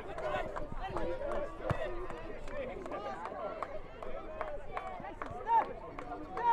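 Several distant voices of footballers and sideline onlookers calling out and talking over one another on an open pitch, with a louder shout near the end.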